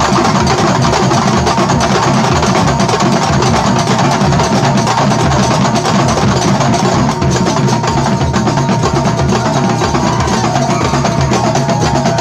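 Kuntulan percussion ensemble of terbang frame drums, large double-headed bass drums and kendang playing fast, dense interlocking keplak strokes. A steady high tone is held underneath.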